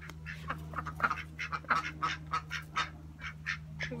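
Several ducks quacking, many short calls in quick, irregular succession, over a steady low hum.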